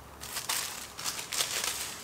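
Paper wrapping of a small package being torn open and unwrapped, with a string of irregular crinkling rustles.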